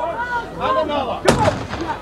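A single gunshot about a second and a half in, fired to signal that the competitor's time has run out, with voices shouting before it.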